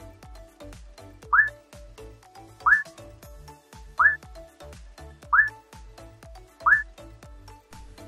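Background music with a steady beat. Over it come five short, rising, whistle-like sound effects, evenly spaced about a second and a third apart; they are the loudest sounds.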